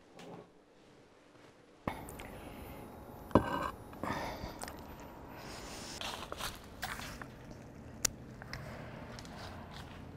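Near silence for about two seconds, then faint, steady outdoor background noise with a few brief clicks and knocks, the loudest about three seconds in.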